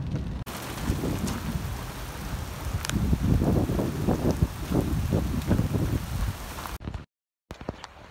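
Rain falling steadily, with irregular low rumbles through the middle and a brief dropout near the end.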